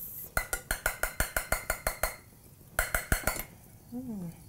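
Wire whisk beating eggs with a little hot milk mixture in a glass bowl to temper them, the wires clicking against the glass about seven times a second. A long run of strokes is followed, after a brief pause, by a shorter run.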